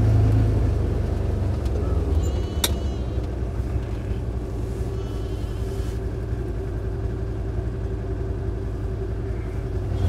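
Side-by-side utility vehicle's engine running with a steady low rumble, heard from inside the cab. A couple of faint, short higher sounds come through it about two and a half and five seconds in.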